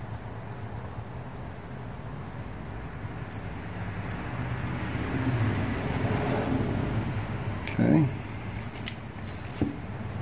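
Steady low hum with handling noise as small brass carburetor parts are worked by hand. A short voice sound breaks in about eight seconds in.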